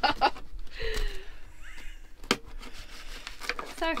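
A short laugh, then a serrated knife sawing through the crusty, overdone base of a banana damper on a plate, with a single sharp knock about two seconds in.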